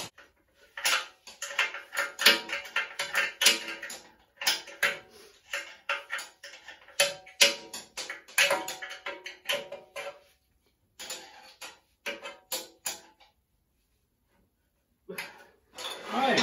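Hand tools working the bolts that fasten an engine frame to a steel table: repeated bursts of metallic clicking and clinking with a slight ring, stopping a few seconds before the end.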